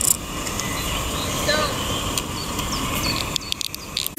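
Outdoor background noise: a steady low rumble, with a few faint high chirps about halfway through.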